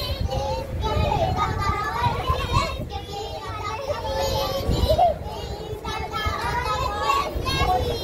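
A group of young children's voices overlapping, talking and perhaps chanting together, with a steady low rumble underneath.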